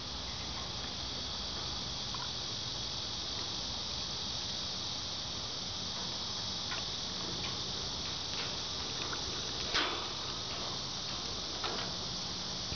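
A steady, high-pitched insect chorus drones on without a break, with a few faint ticks and two short sharp sounds near the end.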